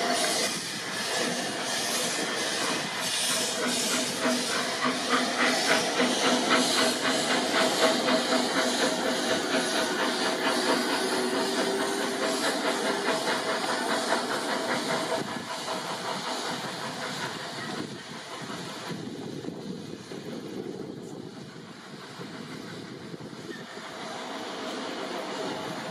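Narrow-gauge steam locomotive pulling a train away, its exhaust chuffs quickening as it gathers speed over a steady hiss of steam, with the carriages rolling along the rails. The sound fades over the last several seconds as the train draws away.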